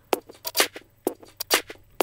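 A percussion loop played back time-stretched in Ableton Live's Beats warp mode with transients preserved at eighth notes: a string of short, sharp hits chopped up unevenly, with artifacts that don't really sound nice.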